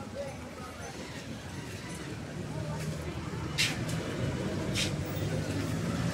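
Town-centre street traffic: a steady hum of passing vehicles, with a low engine sound growing louder in the second half, and a couple of short sharp clicks.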